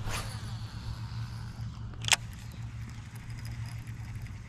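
A cast with a baitcasting rod and reel: a swish at the start with line paying out fading over a second or so, then one sharp click about two seconds in. A steady low hum runs underneath.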